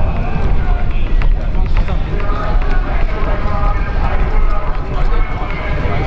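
Indistinct voices of people talking as a group walks along a city street, over a steady low rumble.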